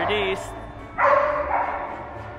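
A chow chow giving one short, steady, high-pitched whine about a second in.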